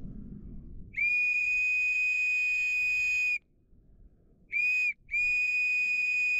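A whistle blown in three steady, level-pitched blasts, long, short, long, to call back a dog that has run off after sheep.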